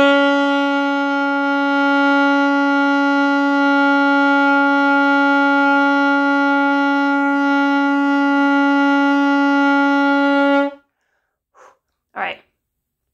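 A saxophone playing a single B, held as one long steady tone for about eleven seconds and then cut off cleanly. This is a beginner's long-tone exercise, the note held out as long as the breath allows.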